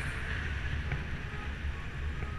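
Wind rushing over the camera microphone on a moving bicycle, a steady low rumble with a hissing wash above it, and a few faint ticks.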